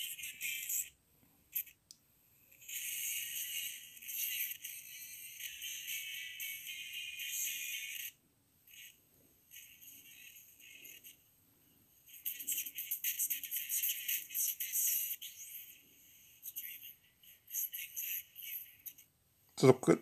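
FM radio broadcast from a 1980s Motoradio Motoman pocket radio, heard thin and tinny through its earphone held to a phone: music and talk coming and going in stretches, with near-quiet gaps between.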